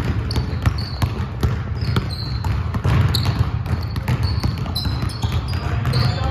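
Several basketballs being dribbled on a hardwood gym floor, a quick irregular run of bounces, with short high squeaks from sneakers on the court scattered throughout.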